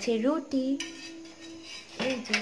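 Kitchen utensils clinking and clattering at a stove while rotis are being made. A short voice-like sound comes at the start, and a sharp click follows a little under a second in.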